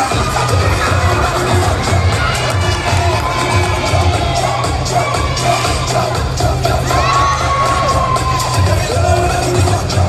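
Reggae dance track played loud over a PA, its heavy bass beat dropping in right at the start, with the audience cheering and children shouting over it.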